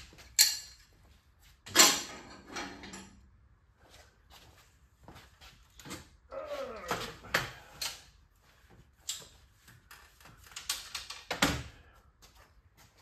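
Steel welding table with a sheet-steel top being handled and flipped over: a series of metal knocks and clanks, loudest about half a second in, about two seconds in and again near the end, with smaller rattles between.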